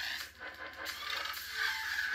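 Lightsaber sound font played through a Crystal Focus 10 saber's speaker as the blade ignites: a buzzing electric hum with wavering pitch.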